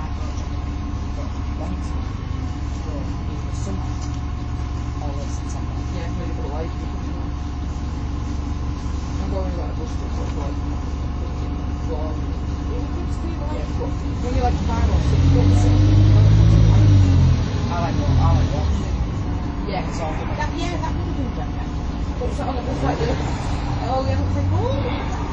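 Diesel engine of a MAN 18.240 bus with an Alexander Enviro 300 body, heard inside the passenger cabin, running with a steady low drone. About fourteen seconds in it revs up and grows louder with rising pitch for a few seconds, then settles back.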